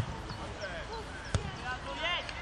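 A football kicked twice on a grass pitch: two sharp thuds, the second about a second and a third after the first, with players' voices calling faintly around them.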